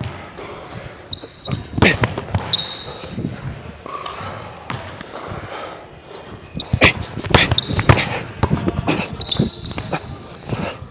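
Basketball dribbled on a hardwood gym floor, bouncing in quick runs about two seconds in and again from about seven to eight seconds, with short high sneaker squeaks on the wood between the bounces. The sound echoes in the large gym.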